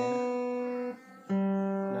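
Yamaha CPX500II acoustic-electric guitar: one open string rings and is damped about a second in, then the open G string is plucked and rings out while it is checked on the guitar's built-in tuner.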